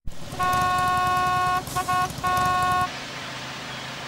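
Car horn sounding: one long honk, two quick toots, then a second long honk, over a low rumble.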